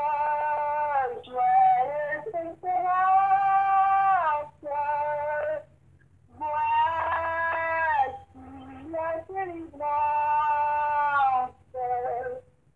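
A high voice singing slowly, holding long notes in short phrases with brief pauses between them, with no accompaniment.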